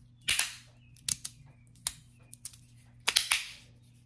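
Magnetic fidget slider with strong magnets, its bead-blasted plates snapping shut with sharp clacks, about five in all, the loudest near the start and end followed by a short scraping tail.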